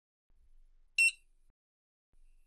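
Hotel keycard encoder giving one short, high beep about a second in, the signal that the card has just been encoded.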